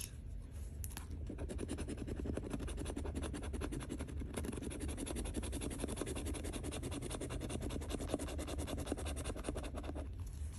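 Edge of a metal challenge coin scraping the coating off a paper scratch-off lottery ticket: a continuous run of rapid back-and-forth scratching strokes.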